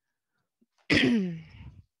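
A woman clears her throat once, a short, sudden vocal burst about a second in that falls in pitch as it fades.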